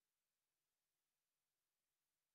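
Near silence: digital silence with no audible sound.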